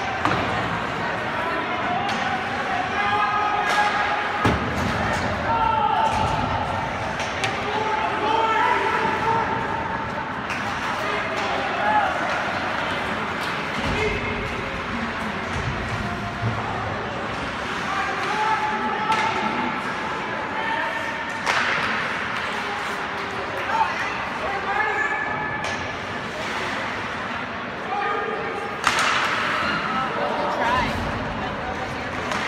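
Ice hockey game in play: voices of players and spectators calling out across the rink, with several sharp knocks of puck and sticks against the boards.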